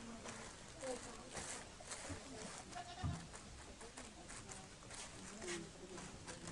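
A plastic bag worn over a hand rustling and scraping over a plastic sheet as it spreads and mixes chilli seeds, with a soft thump about three seconds in. Faint short calls sound in the background.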